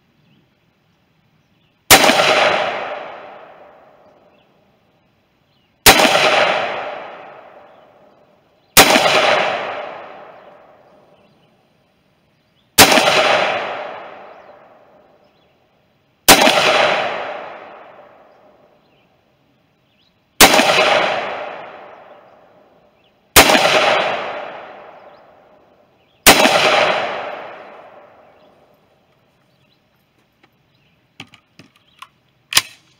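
Eight aimed shots from an AR-15-style semi-automatic rifle, fired one at a time about three to four seconds apart. Each report rings out and echoes away over about two seconds.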